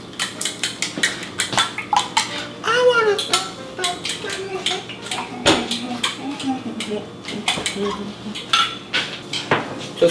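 Eggs being beaten in a ceramic bowl: quick repeated clinks of a metal utensil against the bowl, with one louder knock about halfway through.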